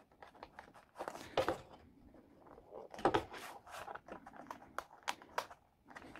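Soft plastic crinkling and tapping as a photocard is pushed into the clear plastic pocket on a binder's frosted plastic cover and pressed flat, in irregular crinkles and clicks, loudest about a second in and about three seconds in.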